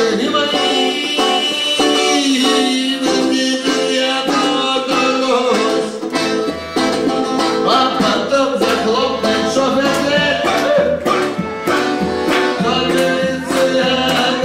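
Live band music with strummed and plucked string instruments keeping a quick rhythm under a melody line that slides between notes.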